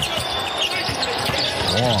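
A basketball being dribbled on a hardwood court during live play, a run of short repeated bounces.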